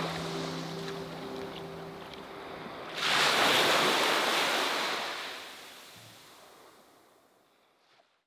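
Sea waves washing in: a wave surges up sharply about three seconds in, holds for a couple of seconds, then the sound fades away to silence.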